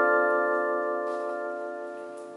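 Electronic keyboard holding the closing chord of the song, many notes ringing together and fading away slowly.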